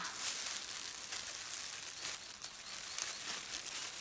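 Rustling and crinkling of a thin plastic bag and a plastic glove as dug-up dandelion roots and soil are put into the bag, with small scratchy rustles running throughout.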